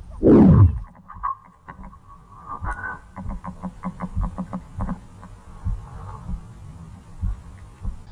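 A quick falling swoosh at the start, then a faint metal detector target tone with many short muffled clicks and knocks, and a low pulsing rumble from the water.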